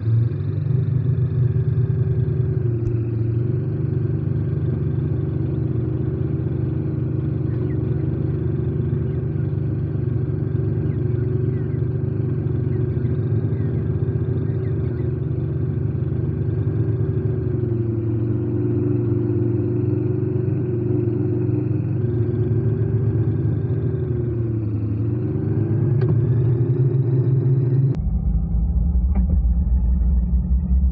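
Bugs 6/3 hybrid quadcopter's 2300KV brushless motors and propellers, heard from the camera mounted on the drone: a loud, steady buzzing hum in flight, dipping in pitch and recovering twice as the throttle changes. Near the end it drops abruptly to a lower pitch as the footage is slowed to half speed.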